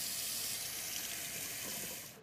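Kitchen tap running into a sink: a steady rush of water that eases off near the end.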